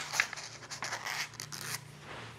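Stiff kraft pattern paper rustling and scraping as hands shift a ruler and a paper piece across it, with a few light clicks; the sound dies down near the end.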